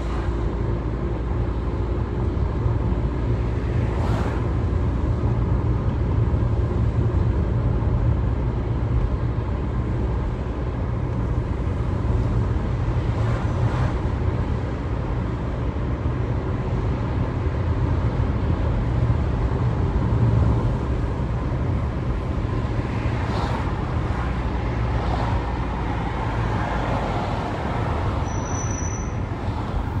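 Steady low road and engine rumble of a car being driven, heard from inside the cabin.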